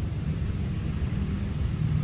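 Steady low background rumble with no distinct event in it.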